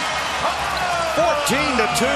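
A basketball dribbled on a hardwood court, with a couple of sharp bounces in the second half, over arena crowd noise and voices.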